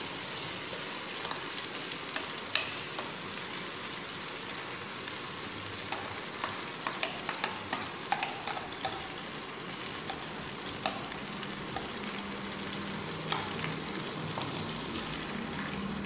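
Hot oil sizzling steadily in a non-stick kadhai as ground urad dal paste is scraped in from a plate onto frying ginger and hing, with scattered light clicks and scrapes of utensils against plate and pan.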